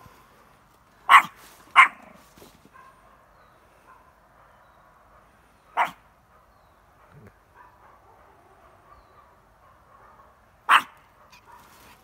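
Small spitz dog giving four short, sharp barks: two in quick succession about a second in, one near the middle and one near the end. These are alert barks at something the owner cannot see.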